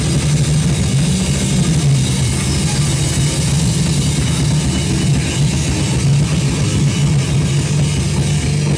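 Heavy metal band playing live: electric guitars and a drum kit, loud and continuous, with no vocals.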